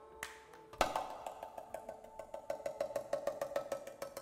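Belly dance drum solo music: a Middle Eastern goblet drum (darbuka) playing sharp strokes over a held ringing tone, with a strong accented hit about a second in and quicker runs of strokes in the second half.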